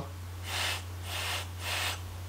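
Air drawn through the airflow holes of a Tauren RDA (rebuildable dripping atomizer): a soft airy hiss in three short pulls, not too loud.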